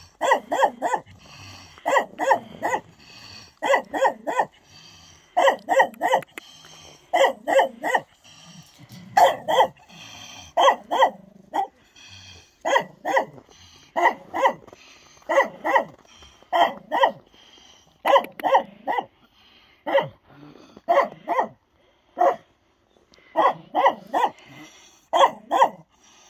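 Mixed-breed dogs barking in short volleys of two to four barks, a new volley every second or two.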